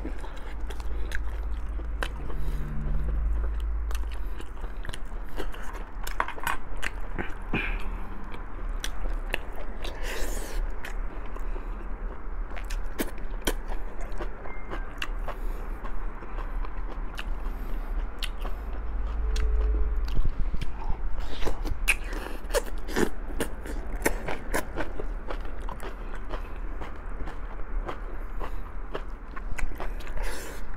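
Close-miked chewing and biting of boiled pork rib meat, with many small wet mouth clicks scattered throughout.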